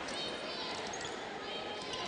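Arena sound during a basketball game: a steady crowd murmur with a few short high squeaks, typical of basketball sneakers on a hardwood court as players move up the floor.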